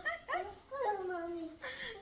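A young child whining in a few short, high-pitched cries, the longest held and falling for over half a second.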